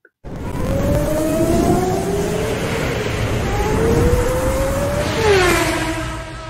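Racing-engine sound effect in a station logo sting: an engine note rising in pitch twice as if accelerating through a gear change. About five seconds in, a falling sweep settles into a steady held tone.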